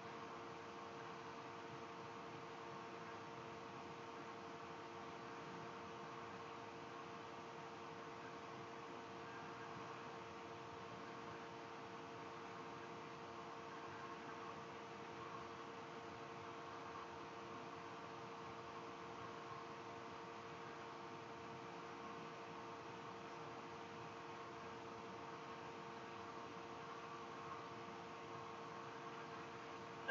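Faint steady hiss with a low electrical hum: background room tone, unchanging throughout.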